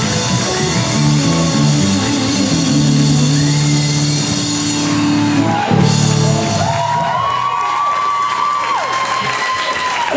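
Live rock band of electric guitars, bass guitar and drums playing the closing bars of an original song with held chords. About seven seconds in the bass drops away and a few high sustained guitar notes ring on.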